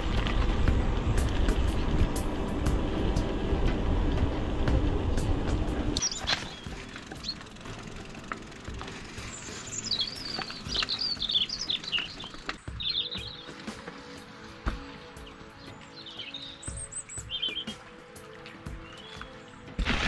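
Wind and tyre rumble on the camera as a mountain bike rolls along a lane for about six seconds, then it drops away and small birds chirp and warble. Faint steady music runs underneath.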